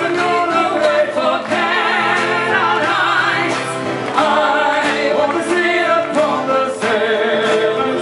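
Live unplugged metal band performance: a female and a male singer singing together over strummed acoustic guitars, heard through the venue's PA.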